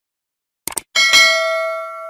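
Subscribe-button animation sound effect: a quick double mouse click about two-thirds of a second in, then a notification bell struck about a second in and ringing out, fading over about a second and a half.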